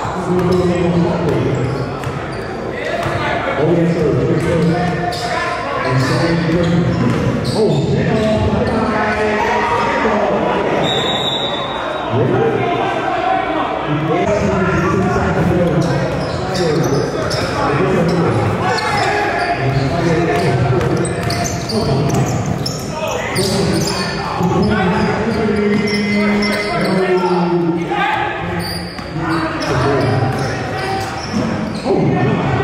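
A basketball bouncing repeatedly on a hardwood gym floor, under the steady talk of players and spectators, echoing in a large gymnasium.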